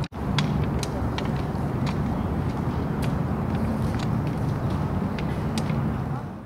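Outdoor background noise picked up by a camcorder microphone: a steady low rumble, like distant traffic or wind, with occasional faint clicks. It cuts out for an instant just after the start.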